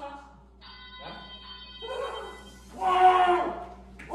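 A steady electronic tone, several pitches held together like a beep or chord, sounds for about a second and a half. It is followed near the end by a short, loud burst of a person's voice.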